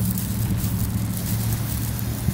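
Wind buffeting a phone microphone: a steady low rumble with an even hiss above it.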